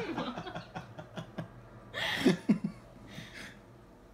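A woman laughing in short breathy bursts, the loudest about two seconds in, with a few light clicks in between.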